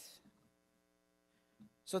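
Faint, steady electrical mains hum from the sound system in a pause between spoken phrases. The end of a man's word trails off at the start and the next word begins near the end.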